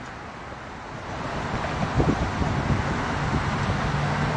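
Highway traffic going past, a steady road noise that grows louder about a second in, with wind buffeting the microphone.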